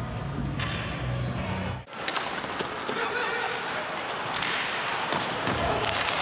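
Music with a steady bass line cuts off abruptly about two seconds in. It gives way to live ice hockey game sound: skates scraping the ice and sticks and puck clacking in an arena.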